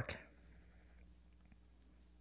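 Faint strokes of a metal-tipped pencil hatching on smooth stone paper, the tip gliding over the surface.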